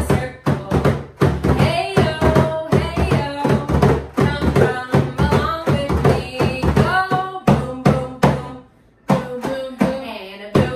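Hand drums, a large frame drum and a small lap drum, struck with the palms in quick irregular rhythms, with a woman's voice singing along. Near the end the drumming and singing break off for a moment, then start again.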